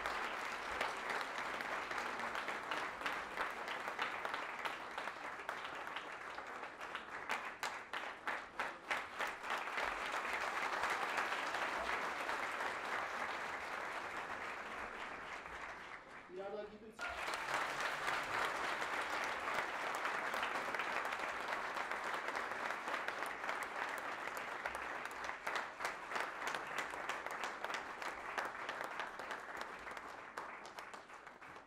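A seated audience applauding in a hall: a dense, sustained round of clapping. It breaks off briefly a little past halfway, then resumes just as full.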